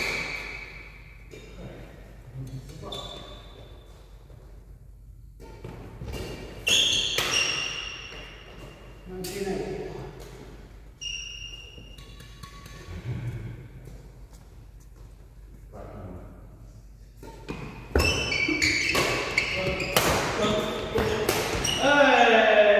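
Badminton racquets striking the shuttlecock with sharp smacks, echoing in a large hall. There are a few scattered hits at first, then a fast rally of quick strokes from about 18 seconds in, with short squeaks of shoes on the wooden floor.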